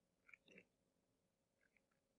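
Near silence, with a few faint, short computer mouse clicks while code is selected in the editor.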